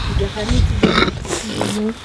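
A person's voice, speaking or chanting with some held notes, over an uneven low rumble like wind buffeting the microphone.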